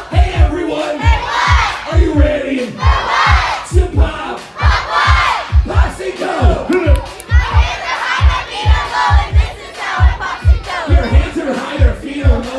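A crowd of young children shouting and chanting together over loud amplified concert music with a steady thudding kick-drum beat.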